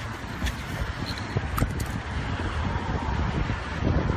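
Steady rumbling outdoor noise of wind buffeting the microphone, with a couple of faint clicks.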